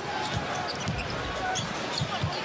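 Basketball dribbled on a hardwood court, repeated bounces, over a steady arena crowd murmur.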